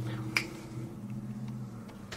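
A single sharp click about a third of a second in, over a faint steady low hum that fades within the first second.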